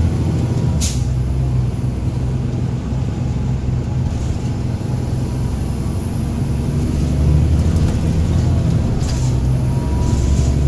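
Caterpillar C13 diesel engine of a NABI 40-SFW transit bus, heard from inside the passenger cabin, droning steadily as the bus drives along. A brief hiss of air sounds about a second in.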